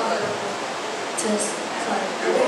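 Quiet, indistinct speech over a steady hiss of room noise and PA.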